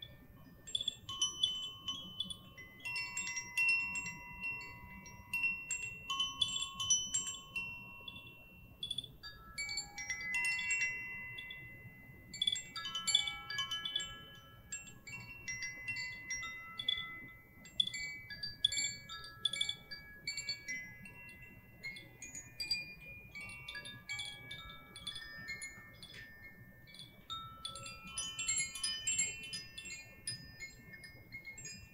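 Two small handheld wind chimes rocked gently by hand, giving a continuous random tinkling of clear, high ringing notes that overlap and sustain.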